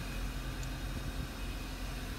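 A 2017 Hyundai i30's engine idling with a steady low hum, heard from inside the cabin.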